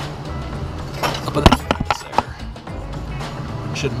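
A handful of sharp metallic clinks and knocks about a second in, as short pieces of steel conduit are handled against a threaded rod and a leaf spring's end, with background music under them.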